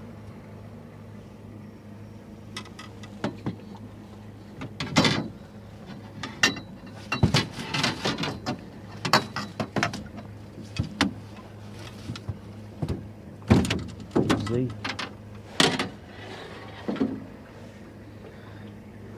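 Irregular knocks, rattles and thrashing bursts as a freshly landed fish flops in a landing net against the boat while it is handled, over a steady low hum.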